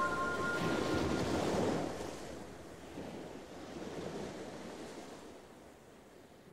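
Surf washing in as a steady hiss of waves, the last chime tones of the electronic track dying out in the first second, the whole fading away.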